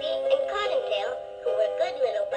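Battery-operated talking Peter Rabbit soft toy reading The Story of Peter Rabbit aloud from its recorded voice, over a steady music backing.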